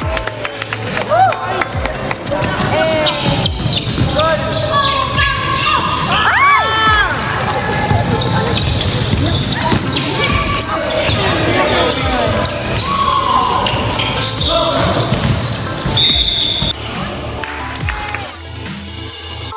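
Basketballs bouncing on a hardwood gym floor during a pickup game, with a run of sharp impacts and several short squeaks, likely from sneakers on the wood.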